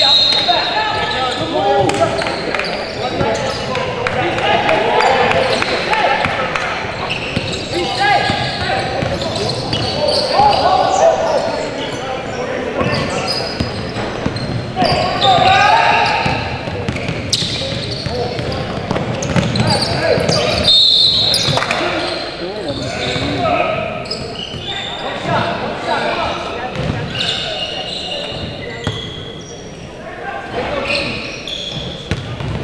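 Indistinct voices of players and onlookers calling out in a large, echoing gym, with a basketball bouncing on the hardwood court now and then.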